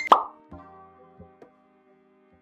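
An edited-in sound effect: a quick falling pop right at the start, followed by a few held music notes that fade out about halfway through, then silence.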